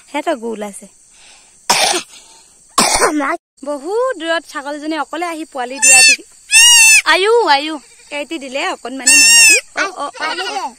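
Young goat kid bleating several times, loudest in the second half, each call high and quavering.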